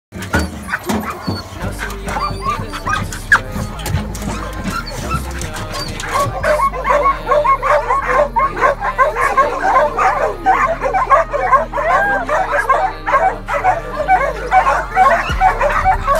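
Hunting dogs barking rapidly at a wild hog they are holding at bay, the barking thickening from about six seconds in. Music with a deep bass line plays underneath.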